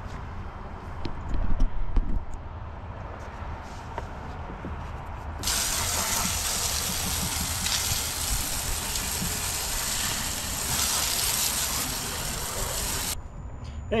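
Garden hose spray nozzle spraying water onto a boat deck: a steady hiss that starts suddenly about five seconds in and cuts off about a second before the end. Before it, a deck brush on a pole scrubs quietly, with a few low bumps.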